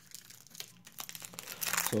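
Foil trading-card pack wrapper being torn open and crinkled by hand: soft, scattered crackles that grow busier toward the end.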